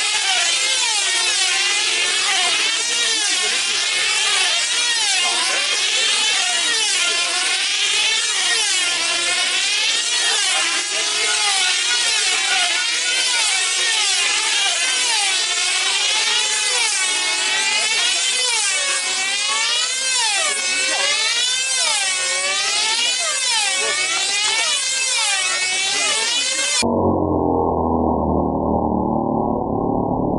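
Several F2C team-race model aircraft's small diesel engines running at full speed, their high pitch swinging up and down about once a second as each model laps the circle. Near the end the sound abruptly turns muffled.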